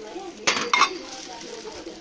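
Glass salad bowl clinking against other glassware as it is set back on the shelf: two sharp clinks about a third of a second apart, the second ringing briefly.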